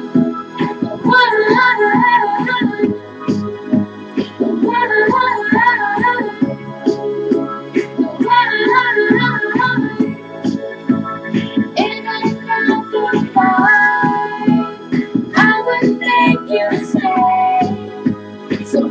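A young female voice singing a pop song over a karaoke instrumental backing track, with wavering held notes.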